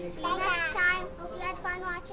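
A young child talking, a high-pitched voice in quick broken phrases.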